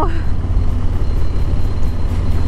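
2020 Harley-Davidson Low Rider S's Milwaukee-Eight 114 V-twin running steadily at cruising speed through its Vance & Hines exhaust, a constant low rumble under road and wind noise.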